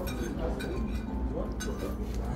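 Light clinks of metal and glass tableware, with short bright clicks near the start and again near the end, over a murmur of voices.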